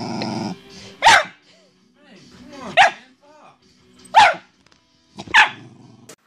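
A dog barking four times, single sharp barks spaced about a second and a half apart.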